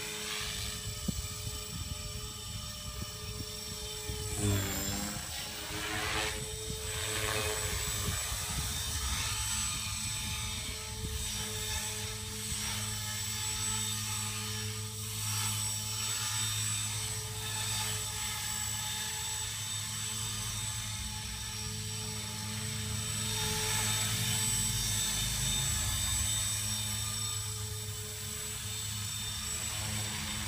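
450 Pro electric radio-controlled helicopter in flight, its motor and rotor giving a steady whine. About four seconds in the pitch dips sharply and climbs back, and the sound swells a little near the end.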